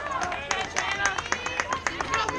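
High-pitched voices shouting and cheering at a softball game, with quick sharp claps scattered throughout.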